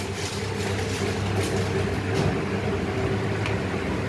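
Steady low machine hum, even in level throughout, with a few faint brief noises over it.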